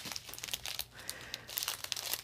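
Small clear plastic bag of diamond-painting resin drills crinkling faintly as it is picked up and handled, with light scattered crackles.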